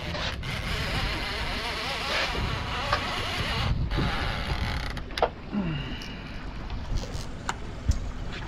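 Steady low rumble of a small outboard-powered boat on open water, with wind on the microphone while a fish is being reeled in. A few sharp clicks come through about five seconds in and again near the end.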